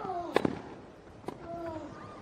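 Tennis ball struck by rackets in a rally: sharp hits just under half a second in and about a second later. A player gives a short grunt that falls in pitch with the shots.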